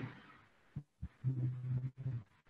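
A man's voice making a short, quiet, steady hum, like a drawn-out 'mmm', about a second long in the second half, just after a couple of faint clicks.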